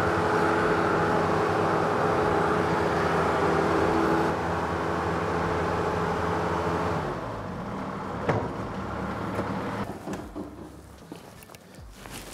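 Bobcat T190 compact track loader's diesel engine running steadily, then dropping in pitch about seven seconds in and dying away as it is shut down. A single sharp click comes about a second after the drop.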